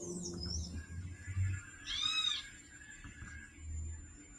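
A bird calling: a short, high, gliding chirp near the start and a louder arched call with a rise and fall about two seconds in, over faint low thumps.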